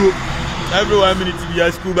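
A man speaking, with a low steady rumble underneath.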